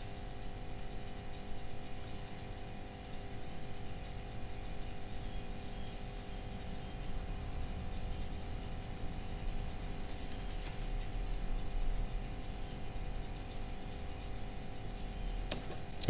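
Faint steady electrical hum with a low hiss, and a few faint clicks about ten seconds in and again near the end.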